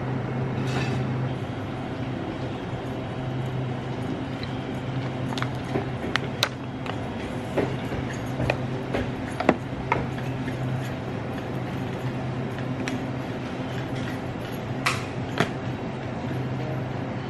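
Small objects being handled at a table: scattered clicks and taps from plastic headphones and packaging, a cluster of them in the middle and another near the end, over a steady low hum.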